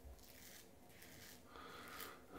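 Faint scraping of a Rex Supply Ambassador adjustable double-edge safety razor with a Wizamet blade, set to one and a half, cutting through three days of stubble on the neck in a few short strokes.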